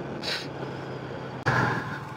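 Yamaha LC135 V8 motorcycle's single-cylinder four-stroke engine running as the bike is ridden along a street, a steady low hum under road and wind noise, with a brief hiss a quarter second in. It gets louder about one and a half seconds in.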